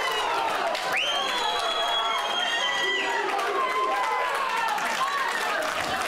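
Small stadium crowd and players shouting and cheering, with one long, steady, high whistle from about one second in until about three seconds.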